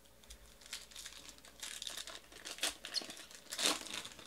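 Plastic-foil wrapper of a 2018 Panini Origins football card pack being torn open and crinkled by hand: a run of irregular crackles, loudest just before the end.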